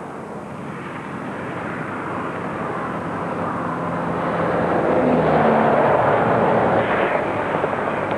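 A motor vehicle passing on the road, its noise growing steadily louder over about six seconds and easing off slightly near the end.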